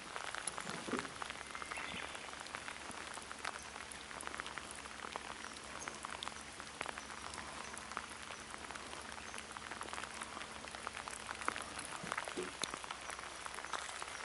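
Steady heavy rain falling on open lake water: an even hiss dotted with many small ticks of individual drops. A faint steady low hum runs beneath it and stops near the end.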